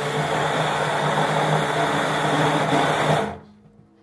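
Immersion blender running in a metal can of whole peeled tomatoes, puréeing them into pizza sauce. A steady motor sound that cuts off about three seconds in.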